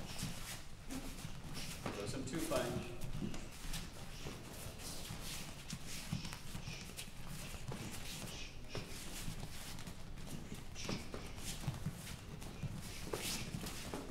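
Bare feet shuffling and stepping on gym mats, with light slaps of boxing gloves, during a partner slipping drill. Low voices sound now and then.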